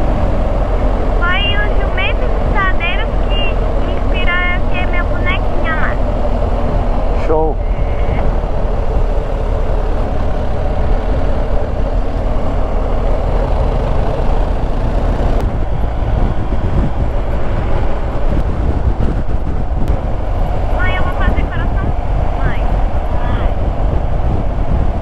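Motorcycle on the move at around 68 km/h: a steady rush of wind and road noise over the engine's low drone, with wind buffeting the helmet-mounted microphone. Brief wavering high-pitched sounds cut through a couple of times, early on and near the end.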